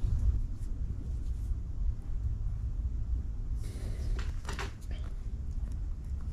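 Hands handling fishing line close to the microphone: faint rustles and small clicks over a low steady rumble. A brief, louder rustle with a few ticks comes about two thirds of the way through.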